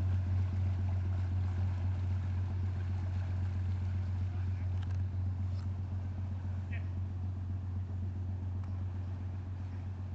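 Canal barge's diesel engine running with a steady low hum that slowly fades as the boat moves away.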